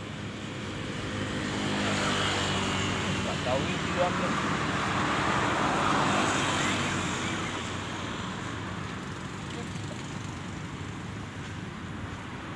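A motor vehicle passing on the road close by: its engine and tyre noise swell over the first couple of seconds, hold, then fade away by about eight seconds in.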